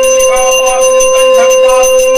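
A brass puja hand bell (ghanta) rung rapidly and continuously, along with a loud, steady held tone.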